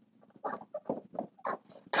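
Dry-erase marker writing on a whiteboard: a quick run of short, irregular strokes as a word is written out.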